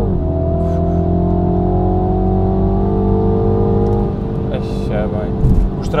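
Mini John Cooper Works' turbocharged 2.0-litre four-cylinder heard from inside the cabin. Its pitch drops sharply at a quick upshift at the start, then it pulls in gear with slowly rising pitch for about four seconds before easing off.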